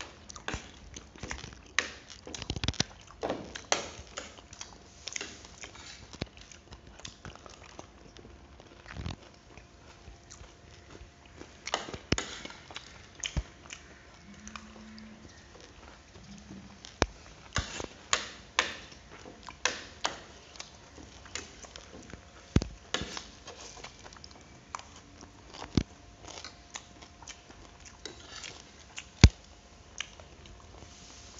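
Eating at a table: a spoon and fork clink and scrape on plates at irregular moments, with chewing of grilled pork in between.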